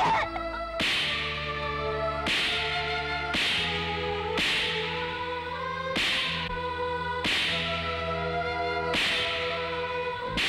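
Film background score: sustained chords, each new chord struck with a sharp, cracking hit, seven times at roughly even spacing.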